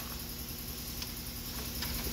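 A few faint, sparse clicks of a metal ratchet being handled, over a steady low hum.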